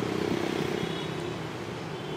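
A steady engine hum that swells over the first second and then eases off, with a faint high whine above it.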